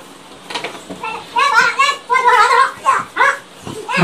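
Men's voices talking loudly in short bursts. The first second is quieter, and then the speech builds.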